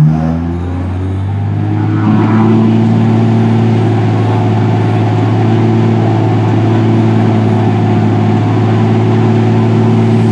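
Extra 330LX's six-cylinder Lycoming engine and propeller revving up to high power in a run-up. The pitch rises over the first second or two, then the engine holds steady at high power.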